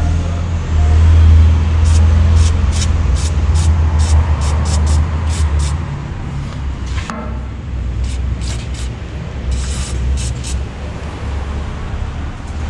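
Aerosol can of white lithium grease spraying in many short squirts, quick in succession, over a loud low steady hum.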